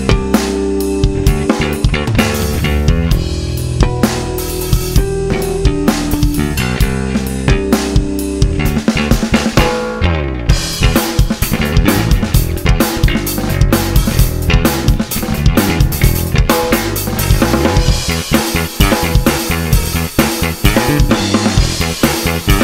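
Stagg P300-SB Precision-style electric bass, strung with an old set of strings, played fingerstyle: a bass line over a drum-kit backing track. About halfway through, the part gets busier and the whole mix grows fuller.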